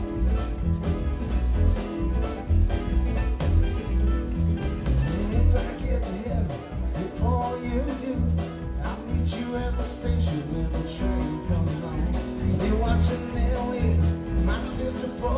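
A live band playing an instrumental passage of a country-flavoured song: electric bass, keyboards and a drum kit keep a steady beat under a lead line with bending notes.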